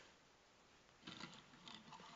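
Near silence, then from about a second in a few faint clicks and scrapes of die-cast toy cars being handled and set down.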